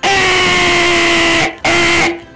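A man screaming at full volume into an overloaded, distorting microphone: one long held yell on a steady pitch, then two shorter yells.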